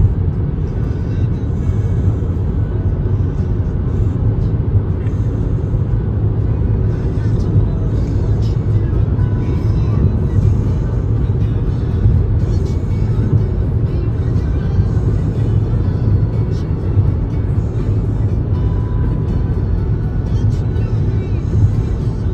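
Steady low road and engine rumble inside a car's cabin cruising at highway speed, with music playing over it.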